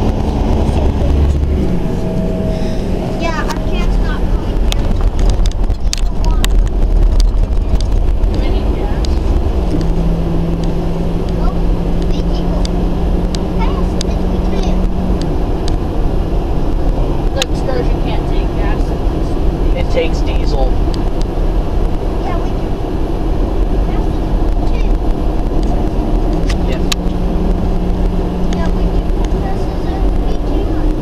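Steady road and engine noise heard from inside a moving vehicle's cabin: a continuous low rumble with a droning hum that shifts pitch a few times, and scattered light clicks and rattles.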